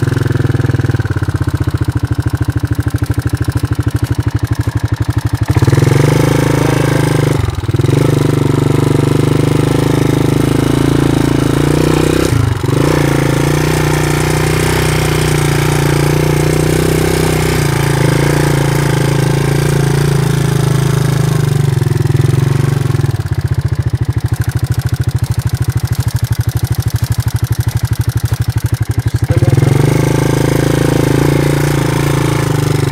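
Yamaha Moto 4 quad's single-cylinder four-stroke engine running under way. The revs step up about five seconds in and drop back near the end, with two brief dips in the engine note in between.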